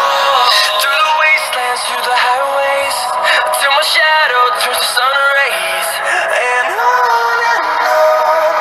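A pop song with a processed, synthetic-sounding vocal melody, played through a smartphone's built-in speaker during a sound test: steady and thin, with almost no bass.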